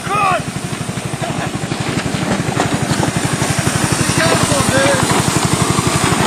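Small 100cc go-kart engine running with a rapid, even beat of about ten pulses a second that slowly grows louder. A brief laugh is heard at the start and a short voice sound about four seconds in.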